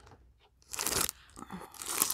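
Plastic packaging crinkling and crackling as it is handled, with a loud burst a little under a second in and smaller crackles near the end.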